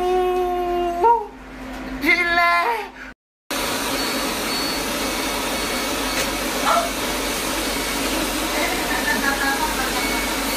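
A man's drawn-out moan held on one pitch for about a second, then a short rising 'oh'. After a sudden cut, a steady rush of blown air takes over: the cold-air cooler used with a hair-removal laser, running on the skin during treatment.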